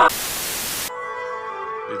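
A burst of loud static hiss lasting just under a second cuts off abruptly and gives way to a held musical chord of several steady tones.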